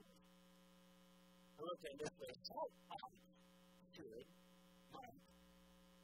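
Steady electrical mains hum made of several level tones, with a man's quiet speech in short phrases from about two seconds in and again near four and five seconds.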